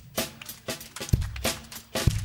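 Live band's drum kit playing a steady beat, with deep kick-drum thumps, snare hits and cymbals, as a song gets going.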